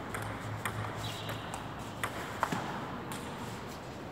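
Table tennis ball clicking off the paddles and table during a rally: a handful of sharp clicks at uneven spacing, the loudest two a little past the middle.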